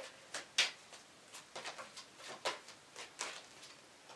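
Tarot deck shuffled by hand: a string of light, irregularly spaced card flicks and taps, about ten in all.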